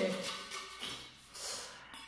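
Folded paper slips rustling and sliding inside a stainless-steel wine cooler as it is shaken: a faint, papery hiss in two short spells.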